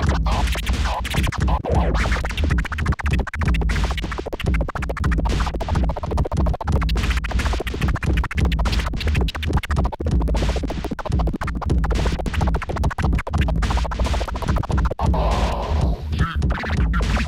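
Vinyl record scratched by hand on a turntable, the sound chopped into many rapid, abrupt cuts, over backing music with a heavy bass.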